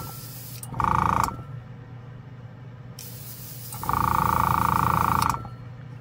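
Compressed air hissing out of an airbrush fed by a budget airbrush compressor, in on-off bursts as the trigger is pressed and let go: a short burst about a second in and a longer one of about a second and a half near the end. Each burst carries a strong whistling tone over a low hum.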